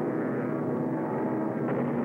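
Propeller aircraft engines with a steady, many-toned drone.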